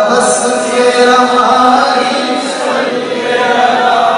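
A man singing a naat, a devotional Islamic poem, into a microphone, drawing out long held notes.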